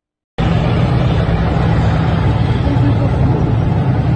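Tanks driving past with a loud, steady, deep engine rumble that cuts in suddenly about half a second in after silence.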